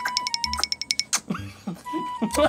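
Fast, even ticking of a countdown-timer sound effect, about eight ticks a second, that stops about a second in.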